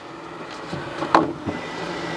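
Air Toobz toy's electric air blower running with a steady hum, and a sharp plastic click about a second in, with a smaller one soon after, as foam balls are fed into its plastic tube.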